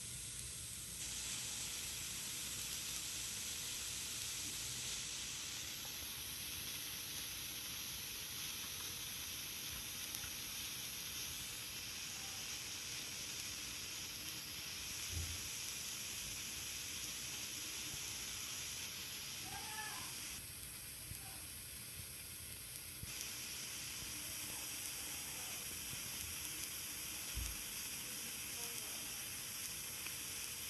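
Steady, faint hiss from a CRT television playing the silent FBI warning section of a VHS tape, with no soundtrack.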